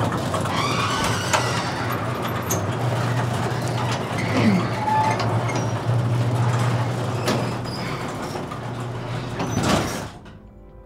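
Motorized sectional garage door closing: the opener runs with a steady low hum while the door panels rumble and knock down their tracks, then the sound cuts off abruptly at the end as the door shuts.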